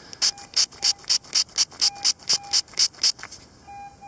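A thumb scrubbing dirt off a small gilt metal button held close to the microphone, in quick scratchy strokes about four a second that stop near the end. Faint short electronic beeps sound underneath.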